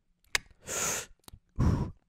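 A man's deliberate filler noises played back from a podcast recording: a mouth click, a breathy exhale, then a short low vocal sound.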